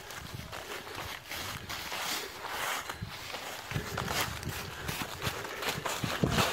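Footsteps running through a thick layer of dry fallen leaves, rustling about twice a second, with heavier footfalls in the second half.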